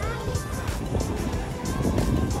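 Music with a steady beat, about three beats a second, over a low steady rumble.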